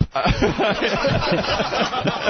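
Several people laughing together, chuckling and snickering over one another.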